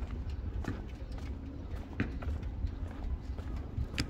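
Footsteps clicking on hard pavement at a walking pace, over a steady low rumble.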